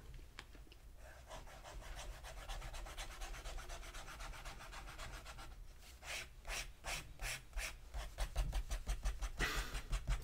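Garant Silka fountain pen nib scratching across paper as it draws loops and lines: a faint, steady scratching, then from about six seconds a quicker run of separate short strokes.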